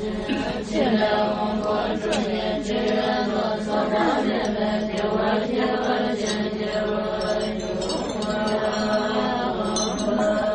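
A group of Tibetan Buddhist nuns chanting prayers together: many voices reciting over a steady low tone, with pitches overlapping and shifting.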